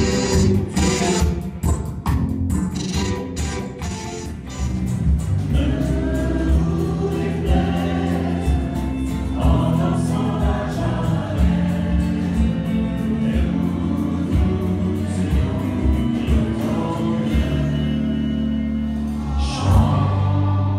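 Live band playing: guitars, bass and drums, with voices singing over the band from about five seconds in.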